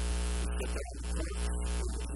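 Steady electrical mains hum with a buzzy row of overtones, lying loudly over the recording.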